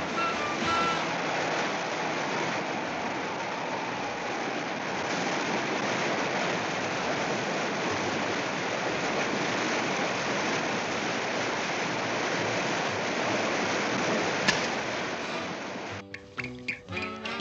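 Steady rushing of ocean surf, a cartoon sound effect for breaking waves, with one sharp click near the end.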